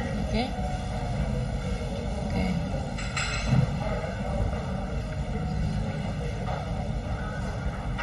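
A steady low rumble of room noise, with a short bite and chew into a slice of pizza crust about three seconds in, the loudest moment.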